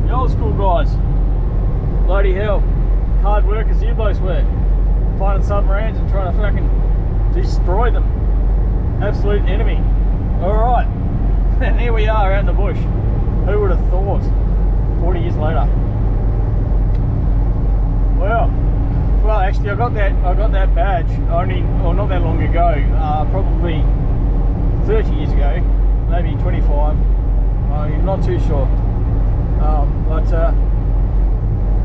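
Steady engine and tyre drone inside the cab of a V8 Land Cruiser running on a gravel road. Indistinct voices from recorded dialogue playing in the cab sound over it on and off.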